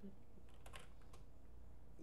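A few light keystrokes on a computer keyboard, entering letters into a crossword grid.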